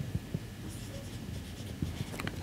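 Marker pen drawing on a whiteboard: faint, short strokes of the tip across the board, with a few light taps.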